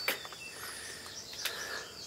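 Quiet forest background with a faint high bird chirp about half a second in and one short click about a second and a half in.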